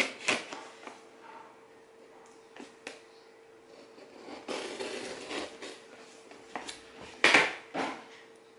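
Scissors cutting open a cardboard box: scattered clicks and snips with rustling of the cardboard, and a louder rustle near the end.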